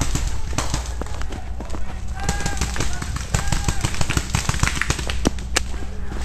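Paintball markers firing in rapid, irregular strings of sharp pops, densest in the middle stretch, with short shouts in between.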